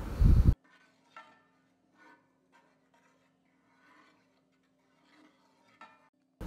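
A brief loud noise in the first half second. After it, a wooden spatula scrapes faintly around a pan as it stirs a thick milk and cornflour batter, a few separate strokes over a low hum.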